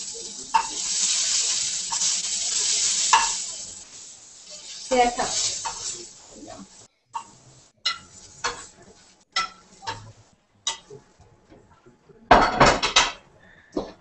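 Dumplings sizzling in oil in a nonstick frying pan while metal tongs click against the pan as they are lifted out. The sizzle fades after about four seconds, leaving scattered clicks and knocks of tongs on the pan, with a louder clatter near the end.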